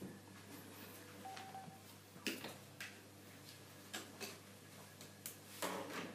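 Light clicks and taps of a feeding spoon and small bowl against a baby walker's plastic toy tray, a handful at irregular times over a low steady hum.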